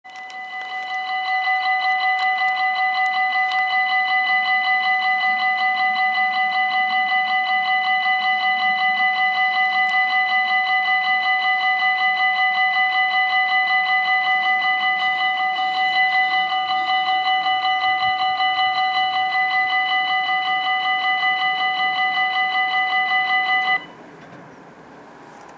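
Level crossing warning bell ringing steadily with a fast even pulse, warning of an approaching train. It builds up over the first two seconds and cuts off suddenly just before the end, with the barriers down.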